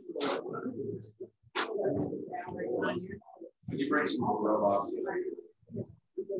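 Indistinct conversation: muffled voices talking in several runs with short pauses, the words not clear.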